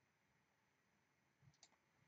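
Near silence: room tone, with one faint click of a computer mouse button about one and a half seconds in.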